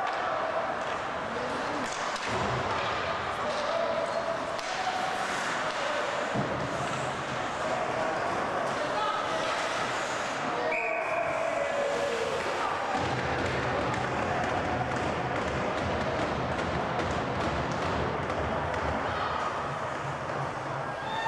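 Ice hockey play in an indoor rink: repeated sharp clacks and thuds of sticks and puck against the ice and boards, under spectators' shouting and talking.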